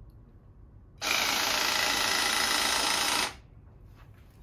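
Zupper EB-65C 18 V battery hydraulic cable cutter running under its trigger: a steady motor-and-pump whir that starts about a second in, holds for a little over two seconds and stops abruptly.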